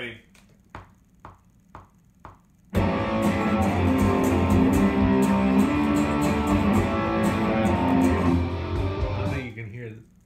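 A few soft clicks about half a second apart, a recording program's count-in, then an electric guitar comes in loud about three seconds in. It plays chords steadily for about six seconds and dies away near the end.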